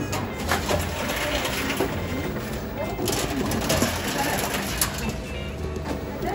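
Reverse vending machine taking in plastic bottles: its conveyor motor hums in short runs, with sharp knocks and clatter as bottles are pushed in and carried away.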